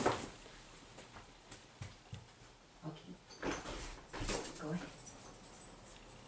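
A dog whimpering briefly, twice, about halfway through, amid faint movement sounds.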